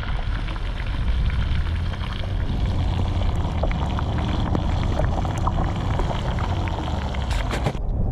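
Fish fillets frying in oil in a pan over a wood fire, sizzling with a dense, steady crackle, over a low wind rumble on the microphone.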